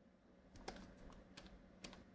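Near silence with four faint, sharp clicks about half a second apart, from computer input used to move to a new page of the lecture notes.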